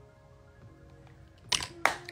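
Two sharp clacks about a third of a second apart near the end as makeup items are handled and put down, over faint background music.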